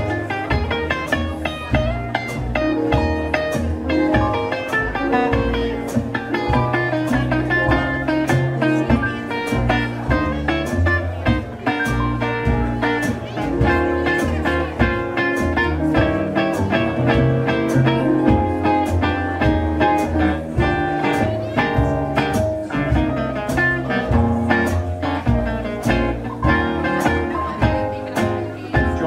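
Live dance band playing an instrumental break in a slow 1930s fox-trot ballad: a Gretsch guitar solo over upright bass and drums keeping a steady beat.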